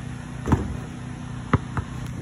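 Knocks of a basketball in play: one sharp knock about half a second in, then two lighter ones around a second and a half, over a steady low hum.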